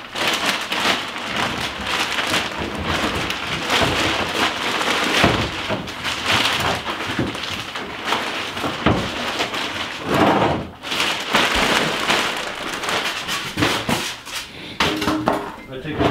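Thin plastic bag crinkling and rustling steadily as it is pulled off a plastic truck-bed storage case, with a few knocks as the case is handled.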